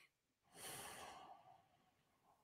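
A person's long, soft exhale, a sigh into a close microphone, starting about half a second in and fading away over about a second.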